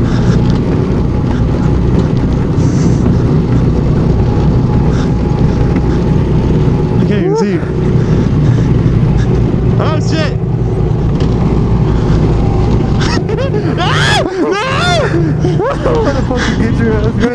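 Go-kart engine running steadily under throttle, a loud low drone heard from the driver's seat, with brief bursts of voice or laughter over it toward the end.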